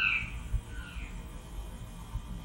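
A pause in a man's recorded talk: a steady low hum and faint background noise, with the last trace of his voice fading out at the very start.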